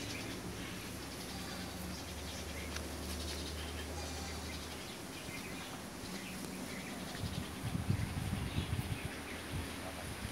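Outdoor farmyard ambience with small birds chirping on and off. A low steady hum runs through the first half, and irregular low rumbling thumps come near the end.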